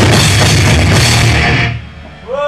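Live thrash/groove metal band playing at full volume: distorted electric guitars, bass and drum kit. The song stops about one and a half seconds in and the sound drops away sharply.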